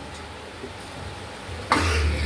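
Low, steady background with no speech, then near the end a sudden short rush of noise with a deep rumble underneath.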